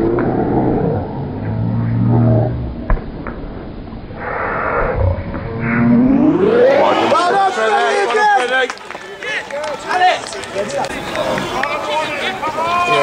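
Voices of footballers and touchline spectators shouting on an outdoor pitch. For the first six seconds the sound is muffled and dull, then it turns clear, with overlapping shouts.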